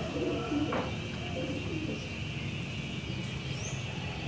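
A dove cooing in short low notes during the first second and a half, with a brief high bird chirp near the end.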